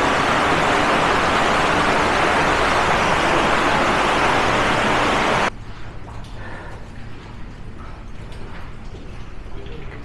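A loud, steady rushing noise, with a faint low hum under it, that cuts off suddenly about halfway through, leaving only faint, irregular scuffs and knocks.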